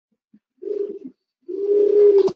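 A person's voice making two drawn-out, wordless hums on one low, steady pitch over an open call line, the second a little longer and ending in a click.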